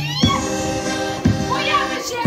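Polish folk band playing: accordion holding steady chords over a drum beat about once a second, with voices sliding upward at the start and singing again near the end.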